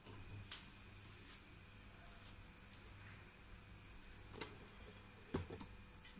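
Quiet kitchen room tone with a faint low hum, broken by a few faint clicks and knocks, one about half a second in and two near the end, from cookware being handled on a gas stove.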